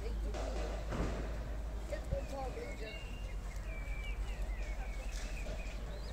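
Outdoor ambience of distant voices over a steady low rumble, with a bird chirping in short high notes for a few seconds from about halfway in.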